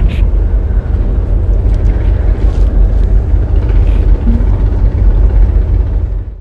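Wind rushing over the microphone on a moving cruise boat, over the boat's low rumble, loud and steady.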